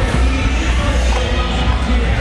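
Background music with a strong, continuous bass.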